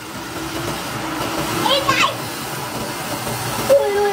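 Steady rushing hiss of water churning in a goldfish tub. A short voiced exclamation cuts in about two seconds in, and a voice starts near the end.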